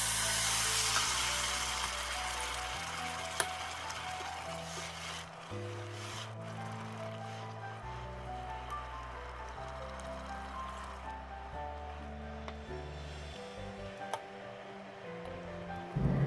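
Background music of held bass and melody notes, over a faint sizzle from the pan that fades away in the first few seconds. A few light clinks of the spatula against the pot.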